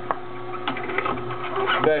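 Omega masticating juicer motor running with a steady hum as its slow auger grinds endive, with scattered short crisp crackles.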